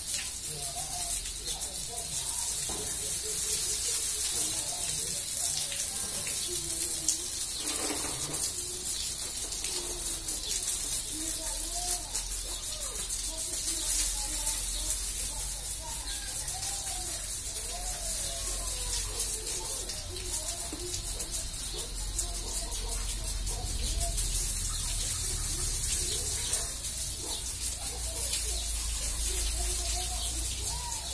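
Water spraying from a garden hose nozzle onto a wet tiled floor, a steady hiss.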